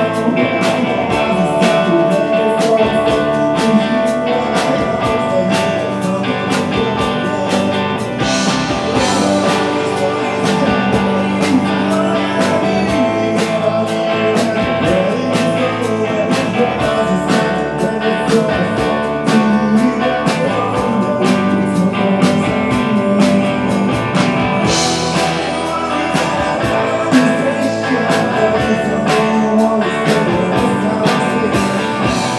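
Live rock band playing a song: electric guitar, bass guitar and drums with a steady beat, and a male voice singing.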